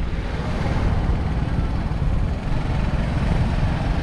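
Motorcycle running steadily at riding speed, mixed with wind rushing over the microphone, heard from the back of the moving bike.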